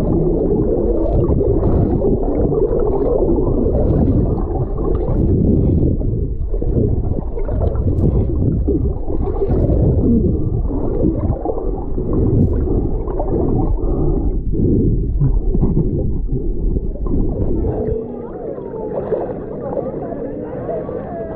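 Underwater sound of a creek pool picked up by a submerged waterproof GoPro: a loud, muffled rumble of moving water and bubbles. About two seconds before the end the camera leaves the water and the sound drops to a quieter, less muffled stream sound.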